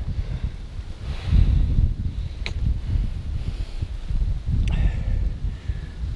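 Strong wind buffeting the microphone in uneven low rumbles and gusts, with one sharp click about two and a half seconds in.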